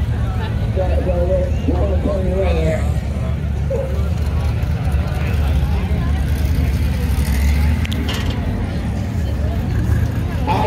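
Steady low engine rumble from a drag car near the starting line, with spectators' voices over it during the first few seconds.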